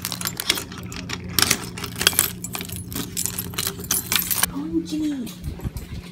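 A bunch of keys jangling and clicking as a key is worked in a small mailbox lock, a rapid run of clicks for the first four and a half seconds.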